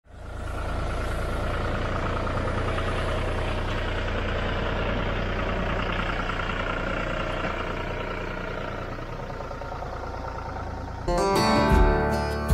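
John Deere 5210 tractor's three-cylinder diesel engine running steadily. Acoustic guitar music starts abruptly about eleven seconds in.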